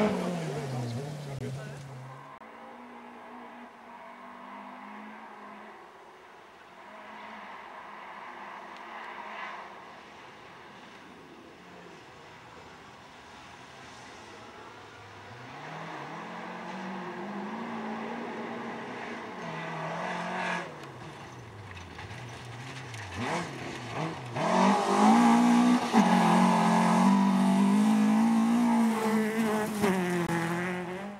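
Rally car engines on a gravel stage, revving hard and rising and falling in pitch with gear changes as the cars pass. The loudest pass comes in the last few seconds.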